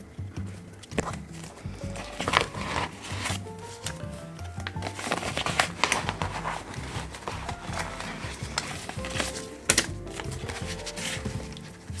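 Background music with a light beat, over which clear plastic binder pockets and polymer banknotes are handled, crinkling and rustling in irregular bursts.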